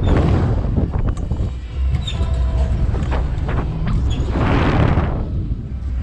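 Air rushing over the ride-mounted camera's microphone as a slingshot ride capsule swings and spins: a steady low rumbling buffet, with a louder rushing whoosh about four and a half seconds in.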